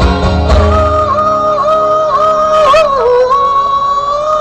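A singer holding one long high note with small dips and wavers in pitch, accompanied by acoustic guitar that is strummed mostly in the first second.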